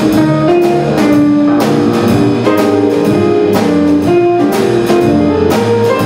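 Live jazz piano trio playing: grand piano over upright double bass, with the drum kit's cymbals keeping steady time. The bass notes move about every half second under the piano.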